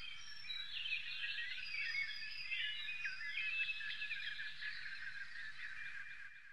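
A chorus of many small birds singing and chirping at once, a busy tangle of short high warbles and trills, fairly quiet.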